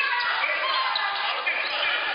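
A basketball bouncing on a hardwood gym floor as it is dribbled, with voices shouting over it.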